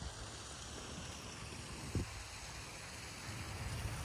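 Steady outdoor background noise, mostly a low rumble of wind on the microphone, with one brief thump about two seconds in.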